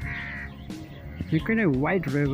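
Background song playing: over a steady backing, a singing voice comes in about two-thirds of the way through, holding a long note that glides down and back up.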